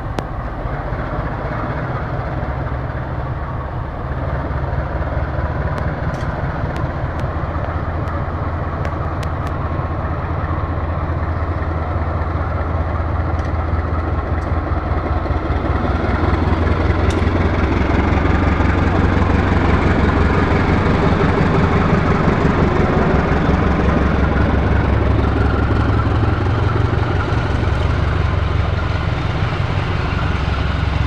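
GE CC 203 diesel-electric locomotive rumbling as it hauls a passenger train close past, growing louder until it goes by about halfway through. The carriages' wheels then roll past on the rails.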